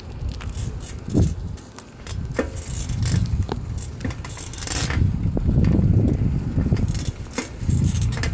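Street cruiser bicycle rolling along pavement: a low, uneven rumble of wind and tyre noise with frequent light metallic rattles and clicks from the bike.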